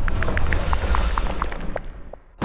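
Logo sting sound effect: a low rumble under a quick run of short plinking notes that step down in pitch, fading out near the end.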